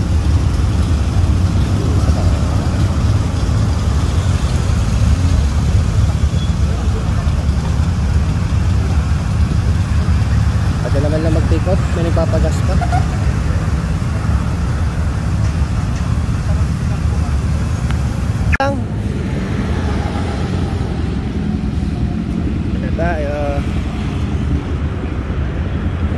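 Steady low rumble of motorcycle and vehicle engines with road traffic, with snatches of voices now and then and a sharp click about two-thirds of the way in.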